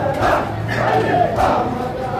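A large crowd of men chanting a mourning chant in unison, with faint strokes of the beat roughly every second and a bit. These are typical of matam, mourners striking their chests together.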